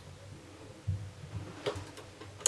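A few faint knocks and a light click as a hand transfer tool is worked against the metal needles of a knitting machine's needle bed, lifting a loop onto a needle.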